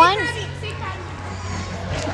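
A child calls out loudly right at the start, then the mixed chatter and shouts of children playing in a large hall, over a steady low hum.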